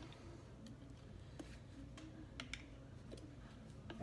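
Faint, irregular clicks and taps of a screwdriver against a scooter wheel as it is levered through the holes of a solid honeycomb tire to straighten the tire's bent-in edge.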